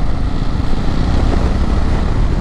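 Steady wind rush on the microphone over motorcycle engine and road noise while riding along at road speed.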